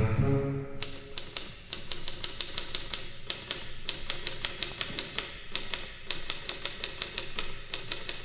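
Typewriter keys clacking in a quick, even rhythm, about five strokes a second, played as percussion over a quiet orchestral accompaniment in a 1960s show-tune recording.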